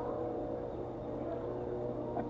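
Steady background hum of a running motor, several held tones that do not change.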